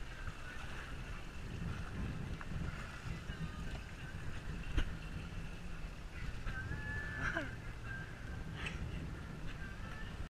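Steady low rumble of wind and water around a small boat at sea, with a faint short click about five seconds in and a brief thin whine a couple of seconds later.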